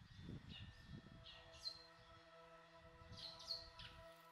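Faint outdoor ambience of small birds chirping, several short falling calls, over a low rumble in the first second. A few faint steady held tones come in about a second in.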